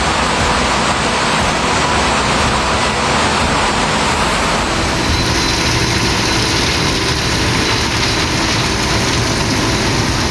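Torrential cyclone rain driven by gale-force wind, heard as a loud, steady rush of noise. Its character changes abruptly about five seconds in as a different stretch of storm recording begins.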